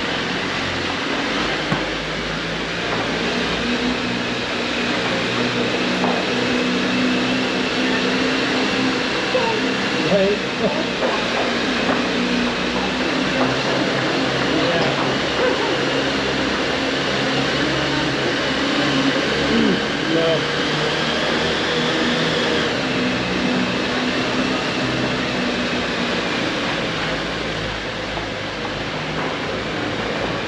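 Lifted Jeep's engine running steadily at low speed as it crawls forward, its pitch stepping slightly up and down.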